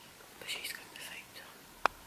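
A person whispering softly, breathy and without full voice, then a single sharp click shortly before the end.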